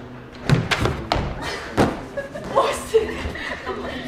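A boulderer coming off an indoor climbing wall: a handful of sharp thuds in the first two seconds as her feet and body meet the wall and the padded matting, the last one loudest, with voices and laughter around.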